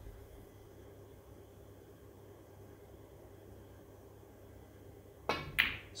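Faint steady low hum of room tone, with one faint click at the very start. A man's voice begins near the end.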